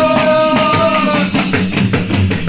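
A band playing in a room: electric bass and an electronic drum kit keeping a steady groove, with a long held melodic note over the first second or so.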